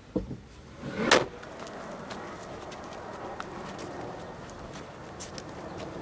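Outdoor ambience: a steady hush of distant traffic with occasional bird calls. It follows a thump and a short, loud rushing sound about a second in.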